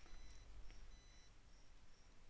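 Near silence: room tone with a faint low hum and a few faint, short high-pitched electronic tones.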